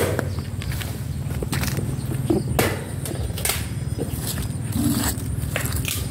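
Footsteps on loose soil and dry fallen leaves, with irregular clicks, crackles and handling noise from the handheld recorder over a steady low rumble.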